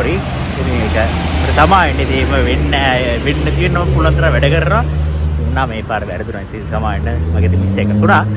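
A man talking over the low, steady hum of road traffic. The hum drops away about six seconds in and comes back near the end, rising slightly in pitch.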